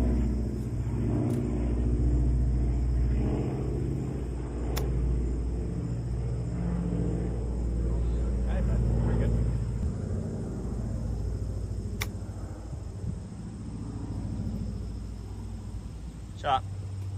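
Two sharp clicks of golf clubs striking balls on short chip shots, one about five seconds in and one about twelve seconds in, over a steady low rumble.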